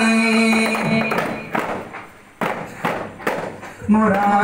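Arabana, large hand-struck frame drums, played under group singing. The singing stops about a second in, leaving about five separate, unevenly spaced drum strikes.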